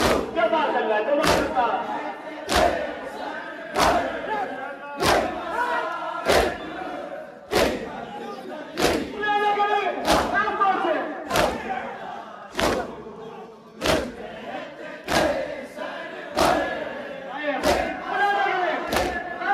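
A large crowd of men performing matam, striking their chests with open hands in unison about once every second and a quarter, each beat a sharp slap. Between the strikes the crowd chants a nauha lament together.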